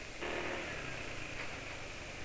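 Automatic scooter's engine running steadily at low speed while riding, under a steady hiss of wind and road noise.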